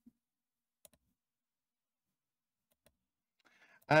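Near silence, broken by one faint click about a second in.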